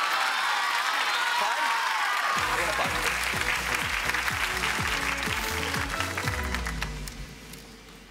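Studio audience applauding and cheering. About two and a half seconds in, music with a stepping bass line comes in under the applause, and both fade away near the end.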